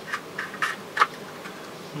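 Small metal tool scraping and clicking inside a plastic suitcase wheel housing: a few short, irregular scratchy scrapes, the sharpest about a second in.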